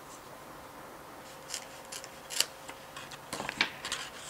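Scissors snipping through clear plastic film in a few short, crisp cuts. The loudest comes about halfway through, and several quick snips follow near the end.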